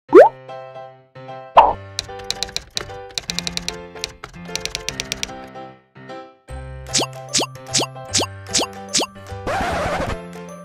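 Light background music with editing sound effects laid over it. A rising pop opens it, then a hit, then bursts of typewriter-style clicks. Six quick pops follow in a row, and a short hiss comes near the end.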